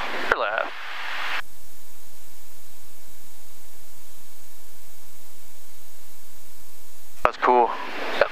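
Steady, even-pitched drone of the airplane's engines and propellers in the cockpit, with both engines running after a practice in-flight restart. It sets in about a second and a half in and holds unchanged until talk resumes near the end.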